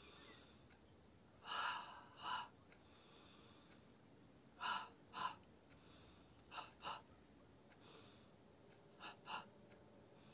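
A person breathing in short, sharp pairs of breaths, four pairs about two to three seconds apart.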